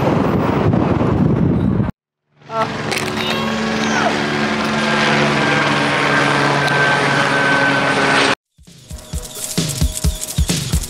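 Helicopter flying overhead, a steady drone that runs for about six seconds. It is cut in between stretches of music.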